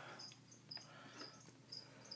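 A cricket chirping faintly, short high chirps two or three times a second.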